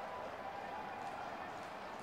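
Low, steady background noise of an ice hockey arena during play, with no distinct events.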